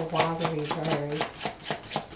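Tarot cards being shuffled by hand, a quick run of card flicks at about five a second, under a woman's drawn-out voice that stops about a second in.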